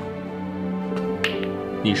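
Soft background music of sustained, held tones under a pause in a man's dialogue, with a brief spoken sound just past the middle and his speech starting again at the end.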